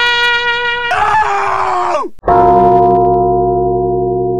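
Title-sequence music and effects: a held brass chord gives way about a second in to a noisy, falling swoop that cuts off abruptly. A deep, gong-like tone is then struck about two seconds in and rings on, slowly fading.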